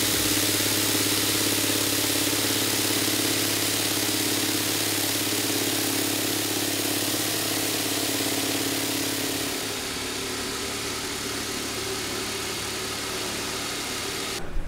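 Burr King vibratory tumbler running, its bowl of ceramic media churning and hissing over a steady motor hum as it deburrs machined metal parts. About ten seconds in the sound drops a little and carries on steadily.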